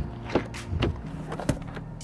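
Three short, sharp knocks and clicks spread over about a second, the last the loudest, as the rear seat back of a BMW iX2 is unlatched and folded down, with faint background music underneath.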